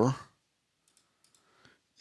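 A few faint computer mouse clicks in the second half, after the tail of a spoken word.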